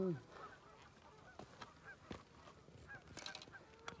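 Faint scattered clicks and a short crinkling rustle a little after three seconds in, from hands handling fishing tackle. A voice is just ending at the very start.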